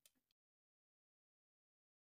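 Near silence: faint room tone that cuts off completely about a third of a second in, leaving dead silence.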